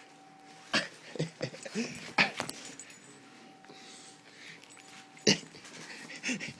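Rhodesian ridgeback breathing hard and making short throaty noises as it play-mouths a person's arm. A few loud bumps of the dog's body against the phone come about a second in, about two seconds in, and near the end.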